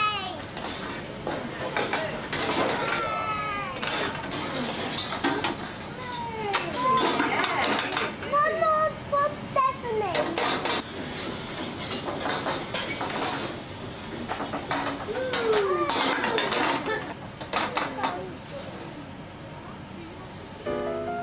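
Young children laughing and squealing excitedly, with occasional clinks of a metal pan and plates.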